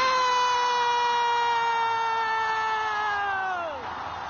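A football commentator's long, held goal cry on one sustained pitch. It lasts about four seconds, sinks slightly and falls away near the end, over faint stadium crowd noise.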